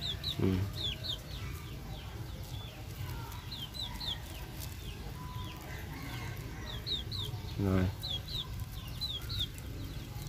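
Birds chirping: short, high, falling chirps, often two in quick succession, repeating every second or so.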